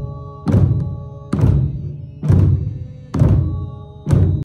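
Buddhist prayer drumming: hand-held fan drums and large temple drums beaten together in a slow, even beat, about one stroke a second. Each stroke is a deep thud that rings out and fades before the next.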